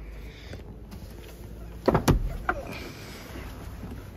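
Handling and movement noise as someone climbs into a McLaren Senna's driver's seat, with one sharp knock about two seconds in.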